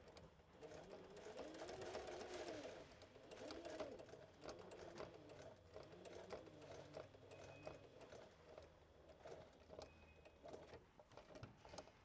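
Sewing machine stitching faintly in short, slow runs, its motor speed rising and falling every second or two, with light clicks from the needle. It is being slowed so that it stops right on an earlier stitch line.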